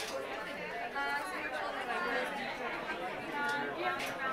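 Indistinct chatter of several people talking at once, with no clear words, and a brief click at the start and another near the end.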